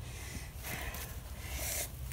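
A person breathing out heavily for about a second, over a steady low rumble.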